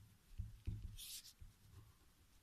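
A pen writing on a paper worksheet, faint: soft low knocks of the pen strokes and hand on the page, with one brief, sharper scratch about a second in.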